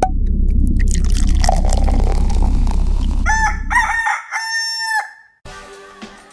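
A loud low rumble for about four seconds, then a rooster crowing: a few short notes ending in one long held note.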